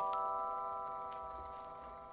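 Background music ending on a rising run of struck notes that are held and ring on together, the last one sounding just after the start, then slowly fading out.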